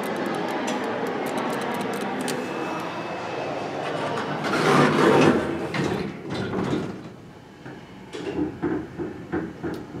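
Dover Oildraulic hydraulic elevator's doors sliding shut, the loudest sound about five seconds in, after a steady background haze. After that the car goes much quieter, with scattered faint clicks.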